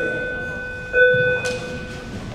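Electronic beep tone sounding twice, a clear single-pitched beep with a hollow, buzzy edge; the second beep starts about a second in and holds for about a second before fading.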